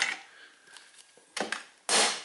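Two sharp knocks from handling the aluminium tripod legs, the second louder, near the end.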